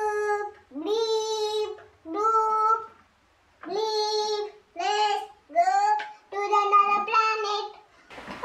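A young girl singing a simple tune in short held notes, most of them on one steady pitch, with a pause about three seconds in.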